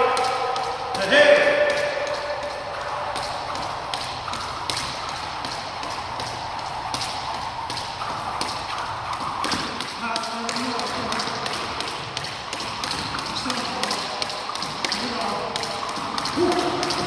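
A rope being swung in a steady rhythm with footwork on a wooden court floor: light, regular taps several times a second. A voice is heard briefly about a second in, and again around the middle and near the end.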